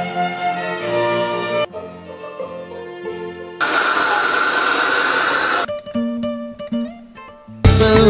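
A quick run of unrelated sounds cut together: violin music for about the first second and a half, then a short stretch of other instrumental music, then about two seconds of a blowtorch flame hissing steadily. A few separate pitched notes follow, and loud music cuts in near the end.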